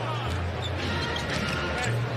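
Basketball arena sound during live play: a ball being dribbled on the hardwood court over crowd noise, with arena music's bass line in low steady notes that change about once a second.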